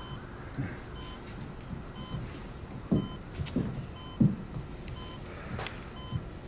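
Medical heart monitor beeping about once a second with a short, clean tone, and a few low, irregular thuds underneath.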